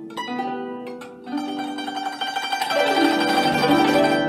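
Guzheng solo: single plucked notes ring out, then from about a second in a fast, dense stream of plucked notes grows steadily louder, with a downward run of notes near the end.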